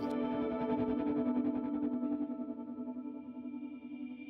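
Electric guitar through effects, a held chord ringing steadily and slowly fading out over the second half.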